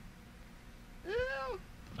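A single short, high-pitched call lasting about half a second, its pitch rising then falling.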